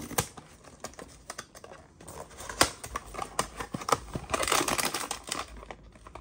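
Small cardboard blind box being torn open by hand: a run of sharp clicks as the tear strip rips and the flaps are pulled, with a longer rustle of card about four seconds in.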